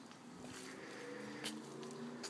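Quiet outdoor background with a faint steady hum of several low tones and a light click about one and a half seconds in.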